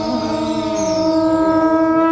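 Conch shell (shankha) blown in one long, steady note.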